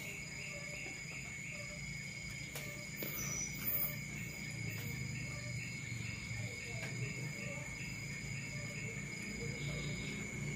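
Crickets trilling steadily in the background, a constant high-pitched chirring with a faint regular pulse.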